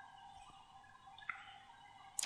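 Near silence: faint room tone, with one faint tick a little past halfway.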